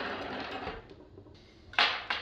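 Steel laptop-stand parts rattling and scraping as they are handled on a wooden table, fading out after the first second. Near the end a steel piece is set down on the table with one sharp knock, the loudest sound.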